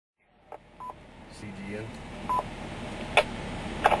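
Two-way amateur radio audio: two short electronic beeps about a second and a half apart and a few sharp clicks over steady radio hiss.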